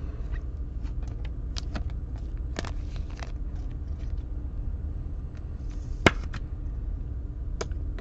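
Small clicks and rustles of plastic being handled as a trading card is sleeved and slid into a rigid plastic toploader, over a steady low hum. One sharper click about six seconds in.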